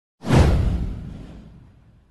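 A whoosh sound effect with a deep boom under it, hitting about a quarter second in and fading away over the next second and a half.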